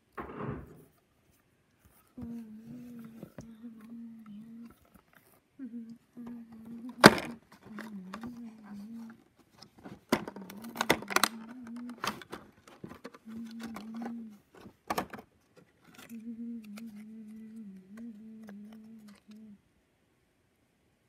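A voice humming to itself in long, mostly level phrases, broken by sharp clicks and knocks from pressing and pulling open a cardboard advent calendar door; the loudest knock comes about seven seconds in, with a cluster of clicks around ten to twelve seconds.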